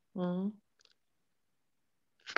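A person's voice: one short drawn-out syllable in the first half second, then a single faint click and silence.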